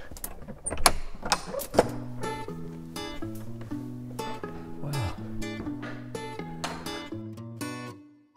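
Acoustic guitar music, plucked notes in a steady picking pattern, coming in about two seconds in. Before it, a few sharp clicks and knocks from the iron ring latch of a wooden door being opened.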